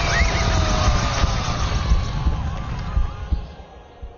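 Animated battle sound-effects mix: a dense low rumble and noise with a few short cries over it, fading away over the last second.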